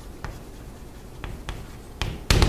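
Writing by hand: faint scratching with three light taps.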